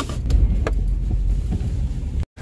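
Steady low rumble of a car on the move, with a couple of light clicks.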